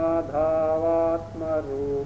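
A man chanting a Sanskrit verse, holding each syllable on a long, steady note and stepping between a few pitches, with short breaks between phrases.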